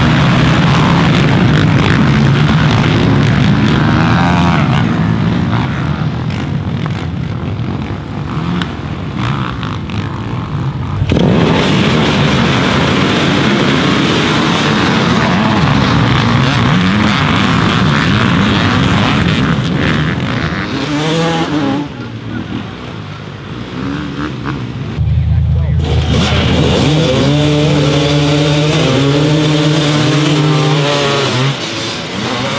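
A pack of racing ATV and dirt bike engines revving hard and accelerating away from a race start, then single machines passing with their pitch rising and falling as they shift gears. The sound changes suddenly about eleven and twenty-five seconds in.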